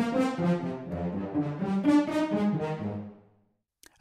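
Sampled orchestral demo: four horns playing staccatissimo layered with a six-player cello section playing pizzicato, from Spitfire's Studio Brass and Studio Strings Pro libraries, played from a keyboard. A run of short, detached chords heard on the wide outrigger microphones, dying away in a short reverberant tail a little over three seconds in.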